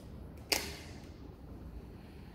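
A single sharp tap about half a second in, with a short ringing tail, over faint low rumble.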